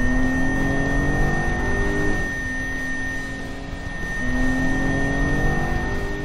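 Car driving, its engine pitch rising, dropping about two seconds in, then rising again, with a steady high-pitched brake squeal held throughout: the kind of brake noise that incorrectly fitted directional brake pads can cause.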